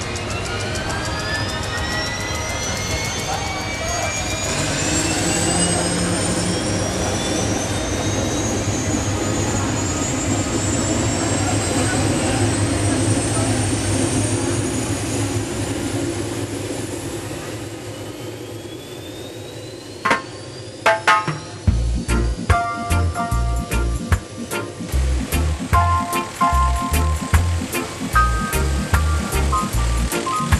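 A small police helicopter's turbine spooling up on the pad, a whine rising steadily in pitch for about 17 seconds over a low rotor rumble. About 20 seconds in, it gives way to music with a steady beat.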